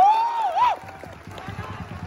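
A crowd of football supporters chanting. The chant ends on one long note that swoops up and down and breaks off under a second in, leaving quieter crowd noise.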